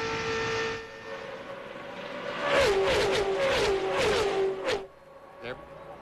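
IROC Pontiac Firebird race cars' V8 engines at full throttle. A steady engine note from an in-car camera comes first. After a short lull, a pack of cars runs past a trackside microphone, several engine notes in a row each falling in pitch as it goes by, before the sound drops away near the end.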